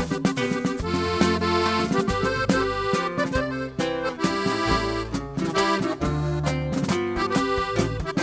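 Diatonic button accordion playing an instrumental passage of a live norteño song, backed by the band with drums keeping a steady beat.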